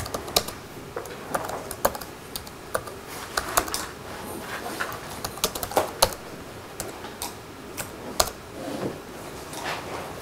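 Computer keyboard being typed on: irregular runs of single key clicks with short pauses between them.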